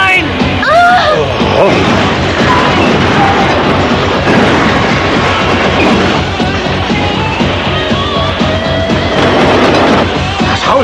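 Dramatic background music over crashing, rumbling sound effects of a collapsing building and falling debris, with a man's alarmed yell in the first second.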